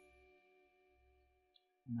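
Background music dying away: a held chord fades out over about a second and a half, leaving near silence.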